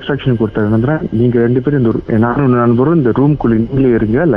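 Speech only: a person talking steadily in Tamil, with no pause.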